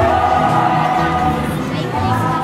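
Music with long held notes, over a busy crowd.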